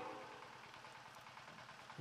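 Near silence: a man's amplified voice fades out in the first half second, leaving only faint steady background noise until speech resumes at the very end.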